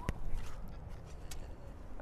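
Wind buffeting the microphone outdoors, a steady low rumble, with one sharp click just after the start.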